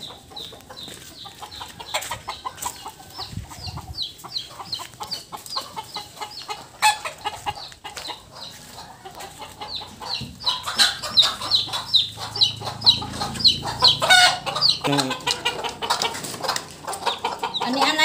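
Native chickens calling: a long run of short, high, falling peeps, two or three a second, which grows louder after about ten seconds.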